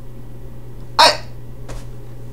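A single short, sharp breath noise from the man, about a second in, over a steady low electrical hum.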